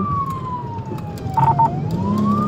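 Police cruiser siren in wail mode, its pitch sliding slowly down and then turning to climb again near the end. Two short beeps come about a second and a half in, over the steady rumble of road noise.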